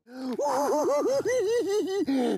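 A man laughing, a quick run of high-pitched 'ha's that starts a moment after a brief hush.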